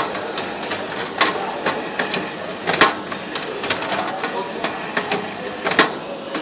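Tabletop automatic banding machine cycling as it wraps a stack with 20 mm paper band: a run of sharp mechanical clicks and clacks from the band feed, tensioning and sealing, with the loudest clacks about a second in, near the middle and near the end.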